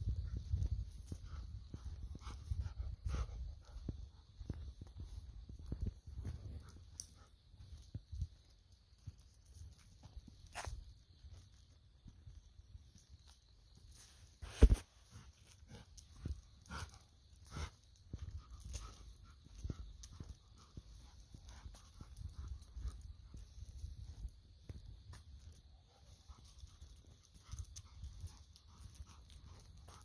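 A steady chorus of autumn insects chirping in two high bands, over close-up noises from golden retrievers on a walk: shuffling, breathing and scattered small clicks. There is one sharp knock about halfway through.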